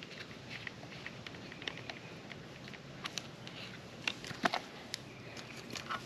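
Faint handling noise: scattered small clicks and taps with light rustling as hands work tape and a connector off a coax cable at an antenna box, with two sharper clicks about four seconds in.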